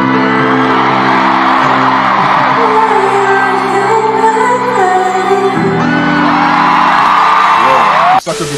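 Live concert recording of a female pop singer holding long sung notes over sustained keyboard chords, with a large crowd cheering and screaming throughout.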